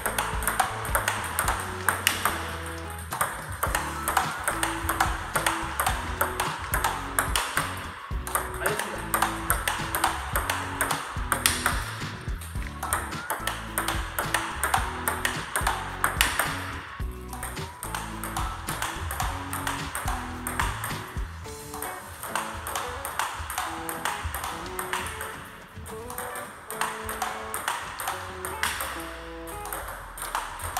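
A table tennis rally: a celluloid ball struck by rubber paddles and bouncing on the table in quick, even succession, mixed with background music that has a melody and bass line.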